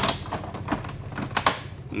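Several sharp, irregular plastic clicks and knocks from an air purifier's panel and filter parts being handled, over a steady low hum.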